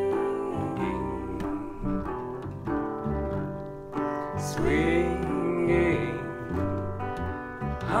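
Resonator guitar and ukulele bass playing an instrumental break in a slow trad-jazz song. A wavering melody line comes in about halfway through.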